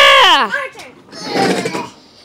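A child's voice: a long, high-pitched vocal exclamation that slides steeply down in pitch and stops about half a second in, followed by a brief, quieter vocal sound.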